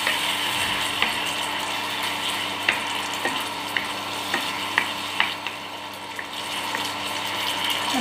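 Onion-and-capsicum gravy sizzling in a non-stick kadai as it is stirred with a wooden spatula, with scattered light knocks of the spatula against the pan.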